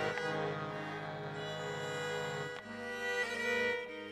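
Instrumental passage with no singing: button accordion and fiddle hold sustained chords over a steady drone, moving to new notes a little past halfway and again near the end.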